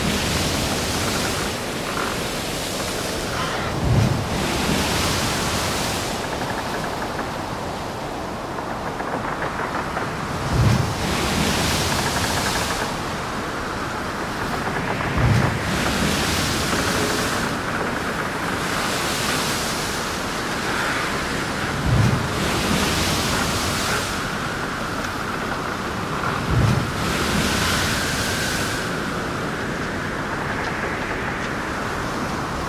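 Strong gusty wind buffeting the microphone, swelling and easing every few seconds, with a low thump about every five seconds. Underneath, a Suzuki outboard motor runs slowly and steadily as the boat is pushed against the wind into a slip.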